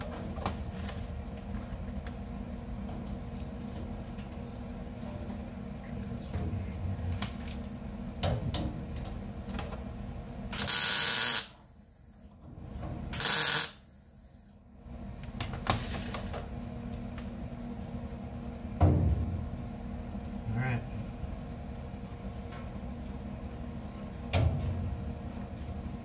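Two short bursts of welding-arc crackle about halfway through, the first about a second long and the second a little shorter: tack welds joining a sheet-steel body panel. A steady shop hum and a few light knocks of metal being handled fill the rest.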